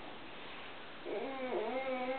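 A long drawn-out vocal call, meow-like, starting about a second in, dipping in pitch briefly and then held steady, over quiet room sound.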